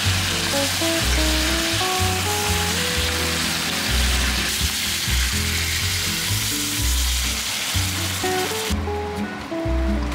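Chicken thighs sizzling in a frying pan under background music with a melody and pulsing bass. The sizzle cuts off suddenly near the end and the music carries on alone.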